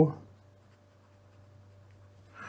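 Faint scratching of a fine-tip pen writing a word on paper, under a steady low hum. The tail of a spoken word is heard at the very start.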